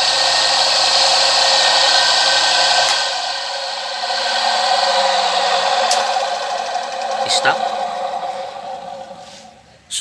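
A 1 hp capacitor-start induction motor running steadily in reverse. It is switched off about three seconds in with a click, then coasts down, its hum falling in pitch and fading. Two sharp clicks come as it slows.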